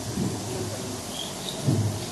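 Handheld microphone being handled, giving low rumbling thumps, a small one just after the start and a louder one near the end, over a steady low hum.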